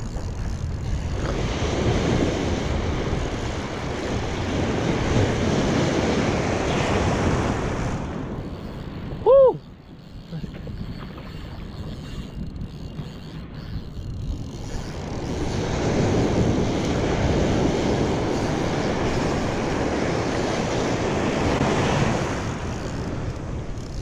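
Surf washing in over the sand in two long surges, with wind on the microphone. A short, loud cry breaks in about nine seconds in.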